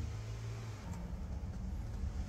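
Low, steady background hum with faint hiss, with no distinct event.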